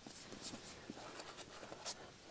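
Faint handling of a book: light rubbing of fingers on the cover and pages, with a few soft clicks and taps.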